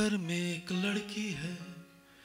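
A man sings a tune into a microphone, holding notes with small bends in pitch, and pauses just before the end.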